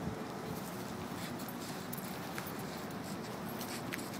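A German Shepherd's claws faintly clicking and scuffing on concrete as it walks, over a steady outdoor background hiss.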